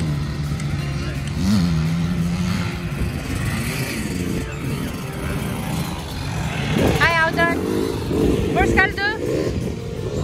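Dirt bike engines running in the distance, their revs rising and falling as the riders work the track. Twice near the end a high, wavering tone cuts in over the engines.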